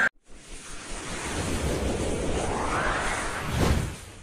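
The crowd sound cuts off at the start and a logo-intro sound effect takes over: a rushing noise that swells under a rising tone and peaks in a whoosh near the end.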